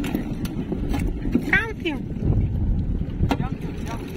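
Wind buffeting the microphone, a low, uneven rumble throughout, with a brief snatch of voices about one and a half seconds in and a few small clicks.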